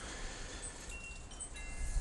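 Faint chimes ringing: a few clear high tones sound together from about halfway in, over a low background hiss.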